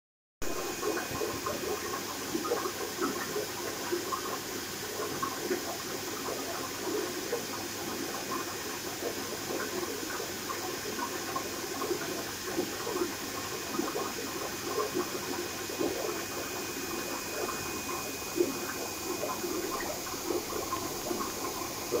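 Water bubbling and trickling steadily, as from an aquarium's aeration or filter return, with a faint steady high whine underneath.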